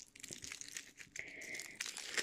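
Faint crinkling and rustling of a Kinder Surprise egg's foil wrapper being handled.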